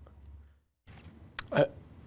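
A quiet pause with faint low hum, then near the end a short sharp click and a man's brief hesitant "uh".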